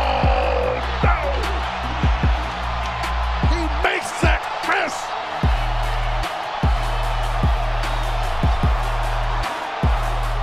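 Background music with a steady, heavy bass beat, laid over arena crowd noise. A voice shouts briefly about four seconds in, while the bass drops out for a moment.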